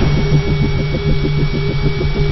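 Sound effect for an animated logo: a loud, rhythmic, mechanical-sounding pulse of about seven beats a second, with a thin steady high tone held over it.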